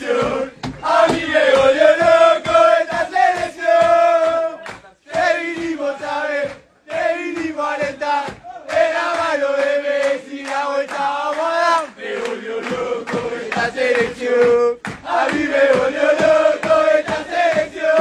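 A group of men chanting a football song together in unison, loud and over an even beat. The chant breaks off briefly several times.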